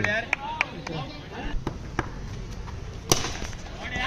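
Cricket bat striking a tennis ball: one sharp crack about three seconds in, the loudest sound, after a few fainter knocks.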